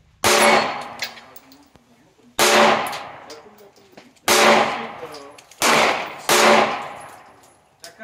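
Five pistol shots from a Hellcat 9 mm pistol firing Sterling 124-grain 9x19 mm rounds, each a sharp report that rings off over about a second. The first three come about two seconds apart and the last two follow more quickly.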